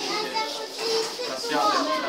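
Indistinct overlapping voices of a small group talking, with a higher-pitched voice standing out near the end.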